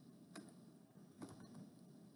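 A few faint clicks of keys being typed on a computer keyboard: one about a third of a second in, then a quick cluster just after a second in.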